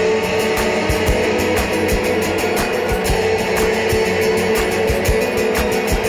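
Live instrumental passage: an acoustic guitar strummed in a quick, steady rhythm while a cello holds long notes underneath.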